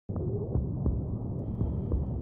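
Low rumbling drone with soft, irregular thuds, starting abruptly at the very beginning: a throbbing body-interior sound-design ambience.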